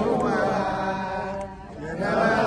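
A man singing unaccompanied in long held, chant-like phrases, dropping away briefly near the end before picking up again.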